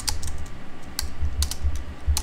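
Computer keyboard typing: about six separate keystrokes spread over two seconds, over a steady low hum.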